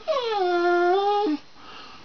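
A dog giving one long whining, howl-like call on command for a treat, its trained 'say I love you' talking trick. The pitch drops at first, holds steady for about a second, then breaks off.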